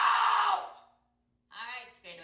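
A person's loud, breathy vocal outburst that cuts off under a second in. After a short silence, a brief voiced utterance begins near the end.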